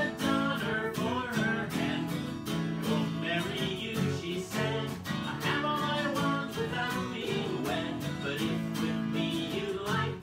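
Acoustic guitar strummed in a steady rhythm, with a man and a woman singing along.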